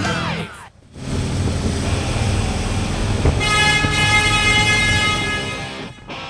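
Steady rush of road and wind noise from a moving vehicle. About three and a half seconds in, a vehicle horn sounds one steady, held note for over two seconds.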